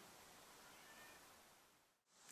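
Near silence: a faint steady hiss between two shots, dropping out entirely at the cut near the end.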